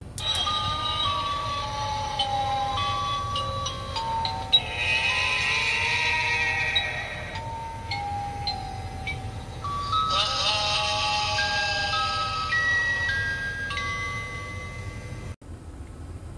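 Animatronic Halloween zombie prop playing its built-in sound effects: a simple electronic melody of plain stepped tones, broken by two longer hissing stretches, about a third of the way in and again about two-thirds in, before it cuts off suddenly near the end.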